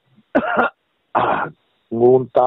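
A person clearing their throat twice: two short, rough bursts about three-quarters of a second apart.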